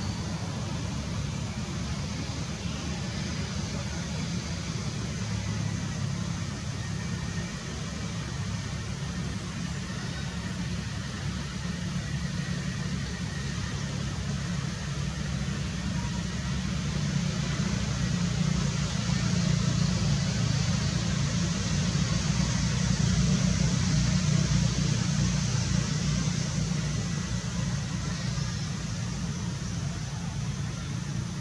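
Steady low rumble with an even hiss above it, growing a little louder in the second half.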